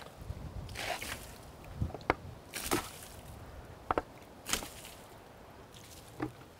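Water poured from a plastic bucket onto freshly sawn cherry slabs, splashing in about four short separate pours, with a few light knocks in between.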